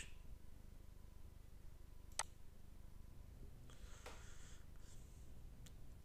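Near silence with a low steady hum, broken by a single sharp click about two seconds in and a faint click near the end: computer mouse clicks while a chart line is dragged. A soft, brief rustle comes about four seconds in.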